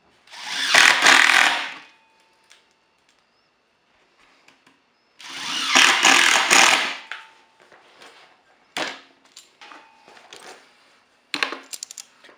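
Cordless impact driver driving screws into the folded aluminium composite panel corner: two bursts of about a second and a half each, the second starting about five seconds in. Small clicks and knocks from handling near the end.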